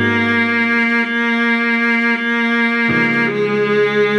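Viola playing the melody of the arranged pop song slowly, at half speed, in long sustained bowed notes, with a new note beginning about three seconds in. A low accompanying note sounds beneath it and fades away after about a second.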